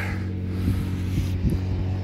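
A steady low machine hum with a few faint clicks.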